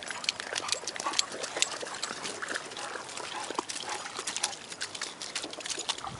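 Dogs in shallow river water: irregular small splashes and sharp clicks of water, with brief dog sounds.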